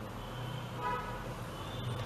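Low, steady background hum, with a faint, brief pitched tone like a distant horn about a second in.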